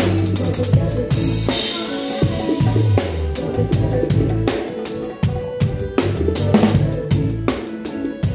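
Live band music with a drum kit played close up: snare and bass drum struck in a busy pattern over sustained low notes. A cymbal wash rings out about a second and a half in.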